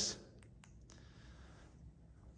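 A few faint clicks in quick succession about half a second in, from the buttons of a handheld LED light-kit remote being pressed to change colour, then near silence.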